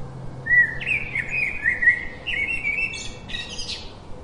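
House sparrows chirping: a quick run of short chirps starts about half a second in, rises a little in pitch and stops shortly before the end.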